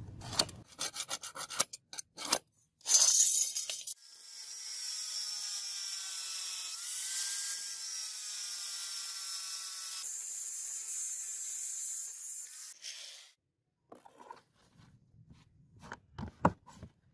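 A few short scratching strokes as a pointed steel scribe marks a cutting line on a rusty steel chopper blade. Then an angle grinder with a thin cutting disc cuts through the blade's steel for about nine seconds: a steady high-pitched hiss with a faint motor whine that dips briefly under load, stopping a few seconds before the end.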